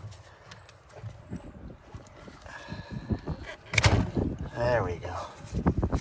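Worn rubber pedal pad being pulled off a brake pedal's metal arm by a gloved hand: scattered rubbing, creaking and small knocks, with one sharp knock a little before four seconds in. A brief voice sound follows.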